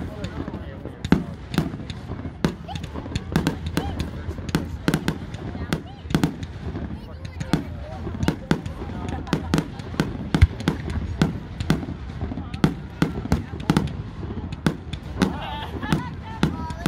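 Aerial fireworks shells launching and bursting in quick, irregular succession: a steady string of sharp bangs and pops, several a second, over a low rumble.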